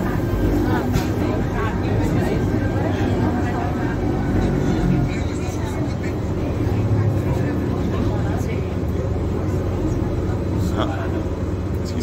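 Electric rack-railway train running, heard from inside the car: a steady rumble with a low motor hum, and voices in the background.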